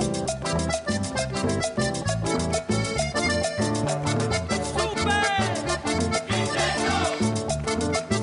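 Cumbia band music with a steady, even dance beat: bass, drums, electric guitar and accordion playing together, with gliding melodic lines in the second half.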